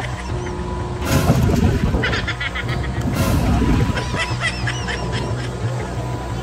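Drop tower ride machinery: a steady low hum with two short bursts of hiss, about one second and three seconds in, and scattered short high squeaks.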